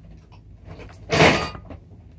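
A short rustling, scraping burst about a second in, with faint clicks before and after: handling noise from rummaging for tools and parts close to the microphone.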